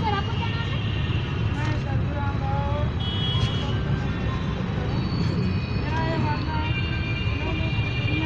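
Steady road-traffic rumble with scattered voices of people talking in the background and intermittent high steady tones over it.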